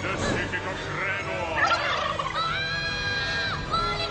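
Cartoon soundtrack of warbling, gobble-like cries, then a single high held tone lasting about a second in the second half.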